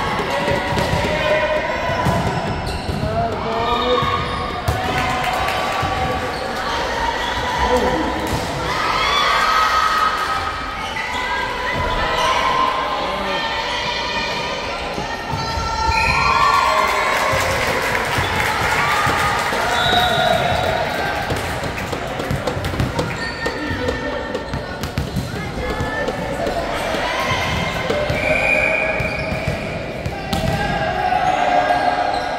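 Indoor volleyball play echoing in a large sports hall: players calling and shouting to each other, with the thuds of the ball being struck and hitting the floor among the voices.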